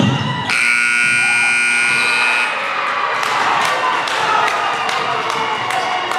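Gym scoreboard buzzer sounding one steady, loud blast of about two seconds, starting about half a second in, as the clock runs out. A crowd then cheers and shouts.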